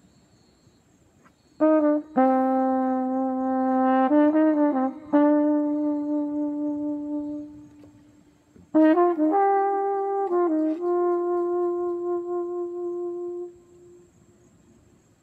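Solo flugelhorn playing two short melodic phrases, each ending on a long held note. The first starts about a second and a half in and fades out on its held tone. The second follows after a brief pause, about nine seconds in, and stops cleanly just before the end.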